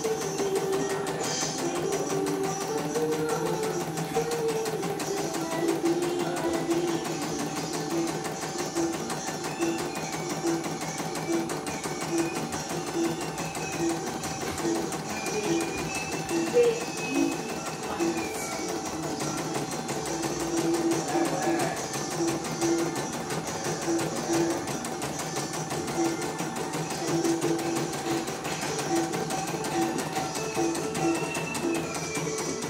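CNY computerized embroidery machine running through a design, needle stitching and hoop frame stepping, with guitar music playing over it.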